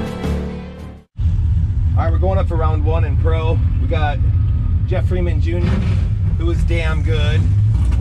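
Background music fading out, cut off about a second in, then a drag-racing Camaro's engine running steadily at low revs, heard from inside the cabin with a man talking over it.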